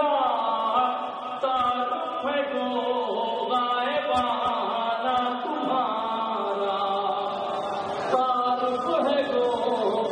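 A man's solo voice chanting an Urdu manqabat in a melodic, sung style, holding long notes that slide up and down.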